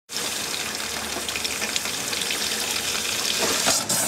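Kitchen faucet running steadily. Just before the end there is a sudden whoosh as gas coming out with the tap water catches fire from a lighter: the well water is laden with natural gas.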